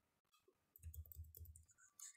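Faint clicks and taps of a stylus writing on a tablet screen, with a soft low rumble around the middle.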